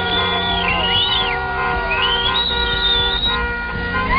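Music: steady held chords, with high sliding, whistle-like notes over them.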